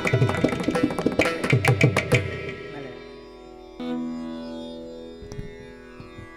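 Mridangam and ghatam strokes in a quick run that stops about two seconds in, closing the piece. The tanpura drone rings on after it, one of its strings plucked again about four seconds in and slowly dying away.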